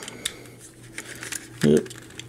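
Scattered small plastic clicks from the joints of a transforming toy robot being handled and posed, with a short vocal sound near the end.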